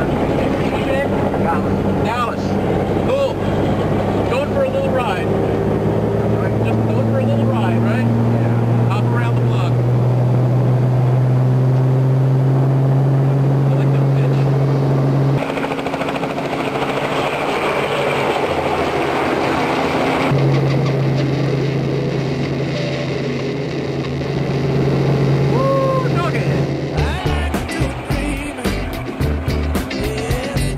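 Helicopter engine and rotor running with a steady hum that rises in pitch through the first half as it spins up. Music with a steady beat comes in near the end.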